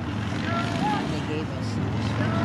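Scattered voices of spectators at a football game, distant and indistinct, over a steady low rumble.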